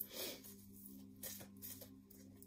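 Oracle cards being shuffled by hand: faint soft slides and light ticks of card against card.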